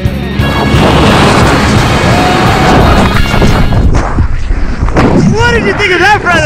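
Loud wind rushing over the camera microphone as a tandem parachute opens, easing off after about four seconds as the canopy slows the fall. Whooping voices come in near the end.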